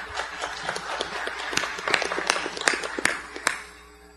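Audience applauding, a dense patter of many claps that dies away near the end.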